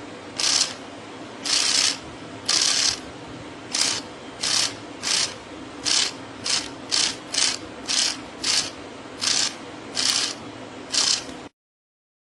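Small DC motor running in short bursts, about fifteen of them, each under a second. Each burst is the motor being switched on and off by push buttons through a MOSFET H-bridge driver.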